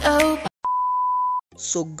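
The intro music cuts off, and after a short gap comes a single steady electronic beep, one pure tone under a second long that stops abruptly.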